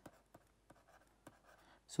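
Faint scattered ticks and scratches of a stylus writing on a pen tablet.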